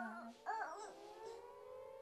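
An air-raid siren rising slowly in pitch, with a baby's squeals and a woman's brief vocal sound in the first second.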